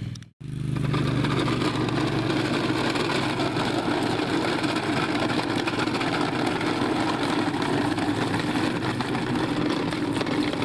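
Toy garbage truck's electronic engine sound effect running steadily, like an idling motor. It cuts out for an instant just after the start.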